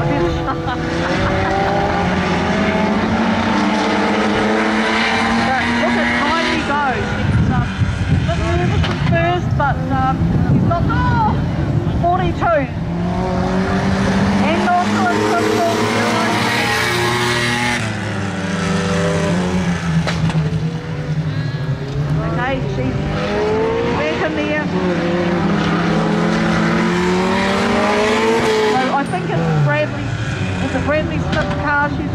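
Several saloon race cars running laps on a dirt speedway oval, their engine notes rising and falling every few seconds as they accelerate and back off, with tyre noise on the clay.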